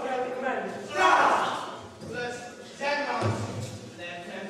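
Actors' voices declaiming on a theatre stage, echoing in the hall, loudest about a second in.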